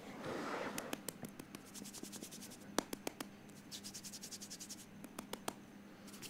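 Hand rubbing softly, then fingernails scratching in quick runs of faint, fine clicks, with a few sharper single clicks.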